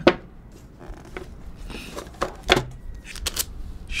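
A smartphone retail box being opened by hand and the phone lifted out: a few light clicks and taps of cardboard and plastic with soft rustling.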